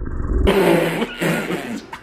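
A sudden burst of loud, wordless laughing and shrieking about half a second in.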